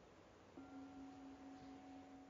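A bell struck once about half a second in, ringing faintly with a steady low tone and higher overtones, the highest dying away first.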